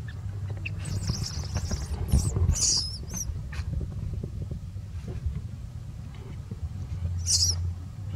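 Newborn long-tailed macaque crying in short, shrill, high squeals: one about a second in, two more soon after, and another near the end.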